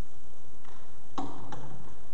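A few light clicks from dried palm fronds being folded and creased by hand, the sharpest just over a second in, followed closely by another.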